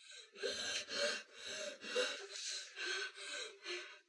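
A person panting in quick, heavy gasping breaths, about two a second.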